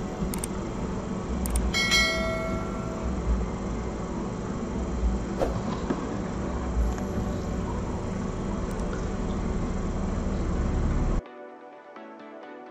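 Subscribe-button animation sound effect: a click or two, then a bell-like ding about two seconds in, over a steady low rumble and hiss. About a second before the end the rumble cuts off suddenly and quieter music begins.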